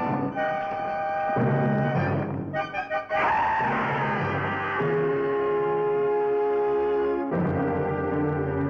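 Dramatic orchestral film score led by brass with timpani: held chords, a quick run of repeated short notes about two and a half seconds in, then a loud swell into a long held chord that shifts near the end.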